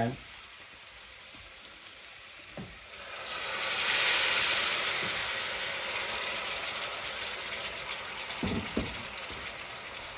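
Water poured into a hot aluminium pan of chicken curry, hissing and sizzling as it hits the hot sauce. The sizzle starts about three seconds in, is loudest just after, and slowly eases off, with a couple of faint knocks near the end.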